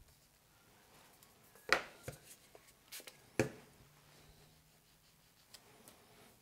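A few light, sharp taps and clicks of a small hand tool and hands working at a tabletop, the loudest a little under two seconds in and two more around the middle.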